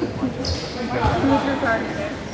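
Gym crowd chatter with a basketball bouncing on the hardwood floor, one thud about a second in, and a brief high squeak about half a second in.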